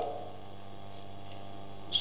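Steady low electrical mains hum in the recording.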